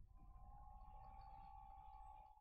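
Near silence: faint room tone with a thin, steady, high-pitched hum and a low rumble underneath.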